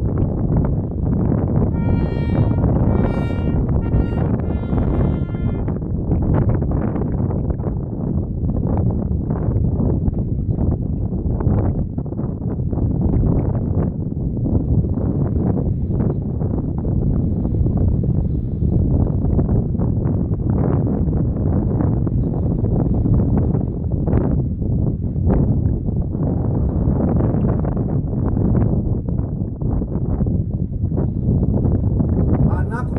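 Wind buffeting the microphone, a dense steady rumble throughout. Near the start come four short pitched tones about a second apart.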